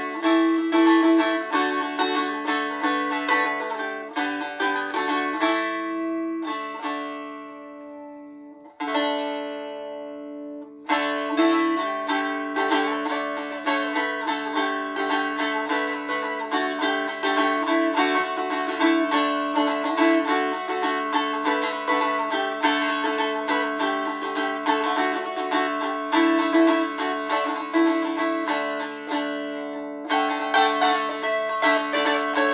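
Mango wood stick dulcimer with a yellow cedar top being picked in an improvised melody high up the neck over a steady ringing drone. About six seconds in the picking stops and the strings ring out and fade, then the quick picking resumes about eleven seconds in.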